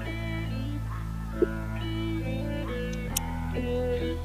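Background music with a guitar playing sustained, changing notes over a steady low bass. Two brief clicks come through, one about a second and a half in and one about three seconds in.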